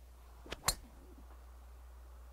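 A golf driver striking a teed ball: one sharp crack a little over half a second in, just after a fainter tick from the downswing.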